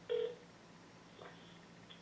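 A smartphone on speakerphone sounding one short tone of an outgoing call, about a quarter second long right at the start, while the call goes through and is about to be answered.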